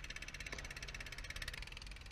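Faint, fast, steady pulsing of a small boat's engine running.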